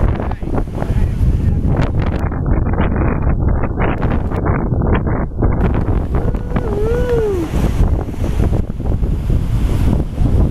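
Wind buffeting the microphone: a loud, gusting low rumble that runs throughout.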